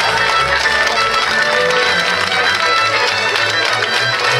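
Slovak folk dance music, fiddle-led over a moving bass line, playing at a steady beat.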